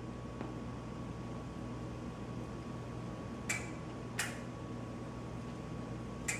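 A steady low hum with a faint constant high whine over it, like a fan or electrical equipment running, with two faint ticks about three and a half and four seconds in.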